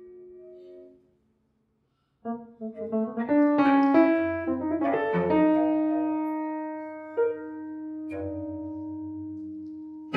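Grand piano in free improvisation: a held tone dies away, then about a second of silence, then a quick flurry of notes. A chord is left ringing and slowly fading, with two more single notes struck near the end.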